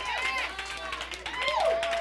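Several congregation members calling out in praise, overlapping voices rising and falling in pitch, with one cry held on a steady note near the end.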